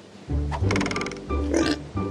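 Cartoon music cue with a comic pig grunt sound effect; a quick, rapidly pulsed burst comes about half a second in.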